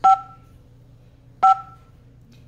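Two short two-tone key-press beeps from a 2GIG alarm control panel's touchscreen as its on-screen buttons are tapped, the second about a second and a half after the first.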